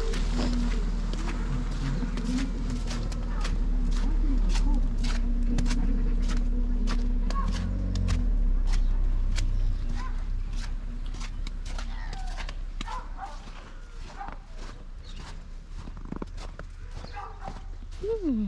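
Footsteps crunching in snow at a steady walking pace, about two steps a second, over a low rumble. A steady low hum runs underneath and fades out about two-thirds of the way through.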